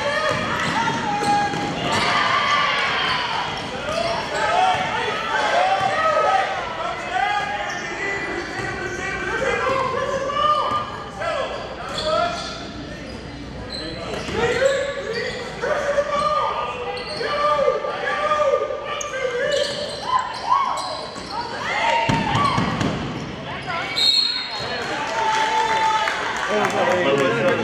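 Basketball being dribbled on a hardwood gym floor, with voices calling out and a short high tone about two seconds before the end that fits a referee's whistle.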